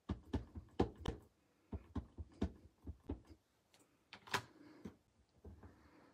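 Ink pad dabbed again and again onto a rubber stamp to ink it: a run of light taps, about three a second, for the first three seconds or so, then one louder knock a little after four seconds in.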